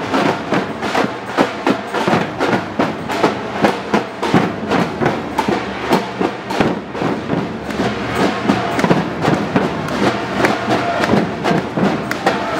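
A band of drums played together, struck with mallets and sticks in a fast, steady rhythm.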